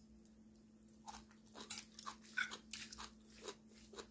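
A metal serving spoon tossing a meat-and-herb salad in a stainless steel bowl: soft, irregular crunches and clicks, starting about a second in.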